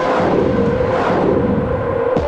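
A rumbling swell in the film's soundtrack over a held low tone, rising and then fading about halfway through, bridging an electronic music cue and a brass-led orchestral one.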